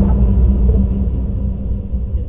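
A loud, steady low rumble with a low hum, slowly fading: the sound bed of an animated end graphic.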